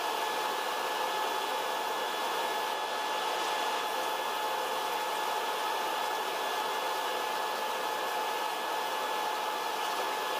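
Paint booth ventilation fans running: a steady hiss of moving air with a constant whine in it, unchanged throughout.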